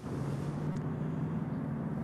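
Road traffic going by on the street: steady engine and tyre noise with a low hum.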